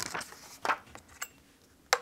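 A few light clicks and taps from hands handling a stamping platform and its hinged clear lid, with a sharper click near the end.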